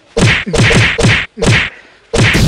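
Thick padded winter gloves thrown in mock punches at the camera, a quick series of loud muffled thwacks on the microphone, about five in under two seconds.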